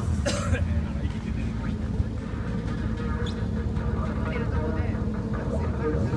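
A motorcycle engine idling with a steady low rumble, voices talking in the background, and a brief sharp noise about a third of a second in.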